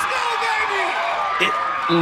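Crowd and players cheering and shouting over a home run, with one voice calling out and falling in pitch in the first second.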